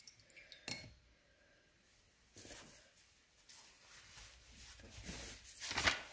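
Paintbrush being wiped on a paper towel: quiet rubbing and rustling, loudest near the end, with a light knock about a second in.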